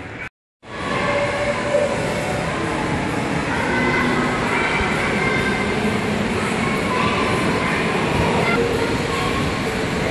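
Steady rumbling din of a large indoor play hall, with faint distant voices mixed in. The sound cuts out for a moment just after the start, then returns louder and holds steady.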